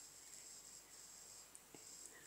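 Near silence: room tone with a faint high hiss.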